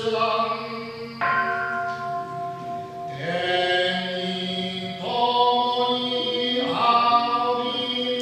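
Buddhist chanting, with a large bronze bowl bell (kin) struck once about a second in and left ringing under the voices.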